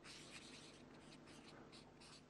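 Faint strokes of a felt-tip marker writing on flip chart paper, a series of short scratchy marks over near silence.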